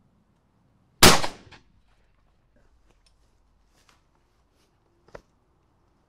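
A single shotgun shot at a wood pigeon, a sharp report that rings out for about half a second. A faint click follows near the end.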